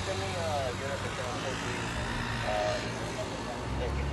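Steady low engine drone, with faint voices talking in the background.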